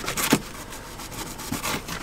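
Kitchen knife slicing through a whole onion onto a cutting surface: a few short crisp cuts just after the start and again near the end, over the steady hiss of a portable butane stove's burner.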